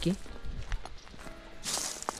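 Footsteps crunching on dry leaf litter and twigs, with one louder crunch near the end, over faint background music.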